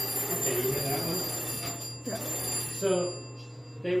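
Antique telephone bell ringing, rung from the switchboard, for about two seconds before it stops; the ring is weaker than it should be.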